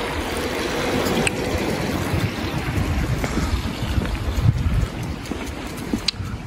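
Wind blowing across the microphone, an uneven low rumble with a few faint clicks.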